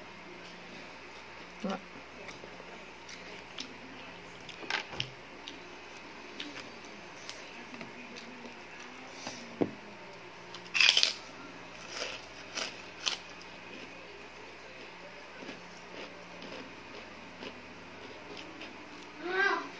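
Close-up eating sounds of a person eating rice and soy-sauce chicken by hand: scattered wet mouth smacks and chewing clicks, with the loudest cluster about eleven to thirteen seconds in, just after a handful goes into the mouth. A faint steady hum lies underneath.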